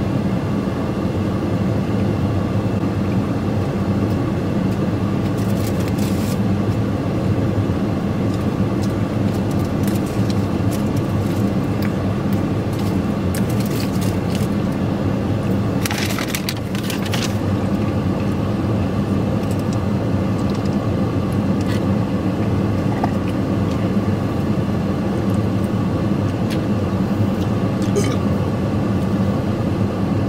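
Steady hum of a parked vehicle's running engine and air-conditioning fan inside the cab, with a person eating a burrito over it. Brief crinkling rustles come a few times, the longest a little past halfway.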